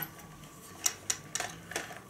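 A few light, irregular clicks and taps of plastic as a DJI Phantom quadcopter's body is handled, most of them in the second half.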